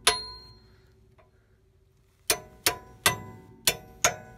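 Hammer blows on a wrench used as a drift, driving a new washer onto a Ford E-350's radius arm bushing stud: sharp metallic clangs that ring on briefly. One strike at the start, a pause of about two seconds, then four more in quick succession.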